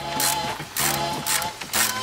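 Ratchet wrench with a 13 mm socket clicking in short bursts as it turns the nut on top of a front strut mount, over background music.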